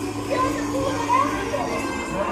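Animated voices, some high like children's, over music and a steady low hum from a dark ride's soundtrack.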